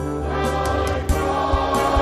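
A mixed choir of Salvation Army songsters singing a hymn-like song with band accompaniment, low bass notes and a light stroke on about every half-second beat.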